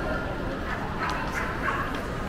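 Busy shopping-mall crowd ambience with a few short, high-pitched yelps or cries in the second half.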